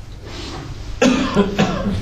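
A man coughs, clearing his throat, in the second half.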